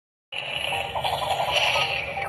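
A breathy 'hhh' panting sound for the letter H, the sound it makes in the song, starting about a third of a second in.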